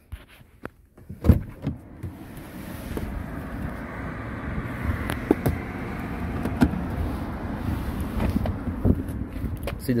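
Clicks and knocks from the rear door's interior handle and latch of a 2021 Mitsubishi Pajero being worked, over a steady noise that swells from about two seconds in.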